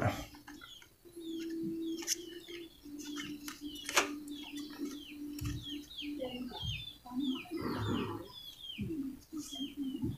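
A bird calling in a steady run of short, falling chirps, two to three a second, with a low steady hum under the first part. Faint clicks and rustles of gloved hands working a motorcycle's rubber-booted wiring connectors, the sharpest click about four seconds in.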